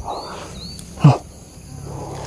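A distant motorbike's engine is heard as a faint, low, steady hum, clearest in the second half. Two faint high rising chirps come in the first second, and one short, loud knock-like sound comes about a second in.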